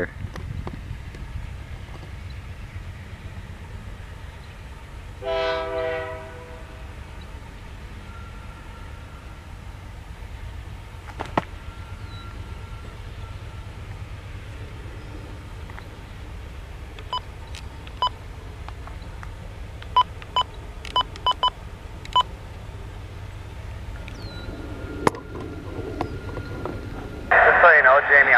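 Distant CN GE diesel freight locomotives (C44-9W and C40-8M) working under load with a steady low engine rumble, their heavy black exhaust showing them throttled up. A single horn blast of about a second sounds about five seconds in. Several sharp clicks come in the second half, and radio voice comes in at the very end.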